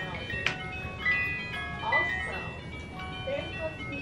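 Hand-cranked Chucky jack-in-the-box playing its tinkly music-box tune note by note as the crank is turned, winding up toward the moment the figure pops out.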